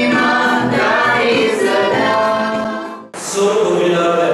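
Several men singing a Christmas carol together on a stage, their voices layered. Just after three seconds the singing cuts off abruptly and a man starts speaking into a microphone.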